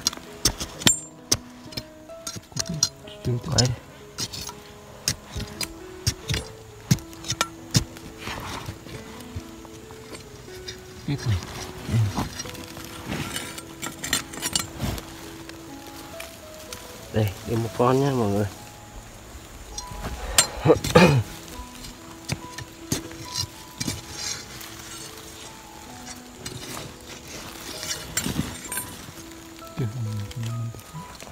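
Music with held notes over repeated sharp knocks and clinks of a metal blade digging into earth and roots. About 17 seconds in, a short wavering cry rises over it.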